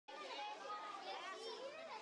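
Faint, overlapping chatter of a crowd of children's voices, with no one voice standing out.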